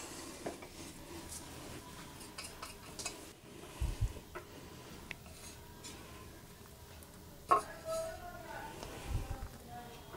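Faint handling of a stainless steel idli stand plate as momos are set into its cups: light taps and scrapes with a couple of dull thuds, and one sharp metal clink about seven and a half seconds in that rings briefly.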